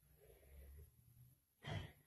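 Near silence in a pause of speech, then a short intake of breath near the end.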